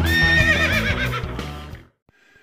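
A horse whinnying: one call that starts high and held, then wavers and falls, laid over the end of rock intro music. Both fade out just before the end.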